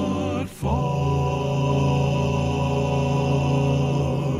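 Male gospel vocal quartet singing a long held chord, with a brief break about half a second in before the chord is taken up again.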